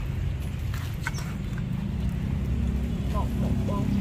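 Steady low background rumble with no distinct events, with a faint voice near the end.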